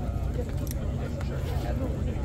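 Indistinct conversation among several people over a steady low rumble.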